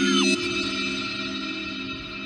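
Electronic backing music winding down: a held, effects-laden synth chord slowly fading after the beat has dropped out, with a quick falling pitch sweep at the start.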